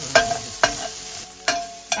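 Diced red onion sizzling in oil in a stainless steel frying pan as it softens, stirred with a spatula that scrapes sharply across the pan bottom four times.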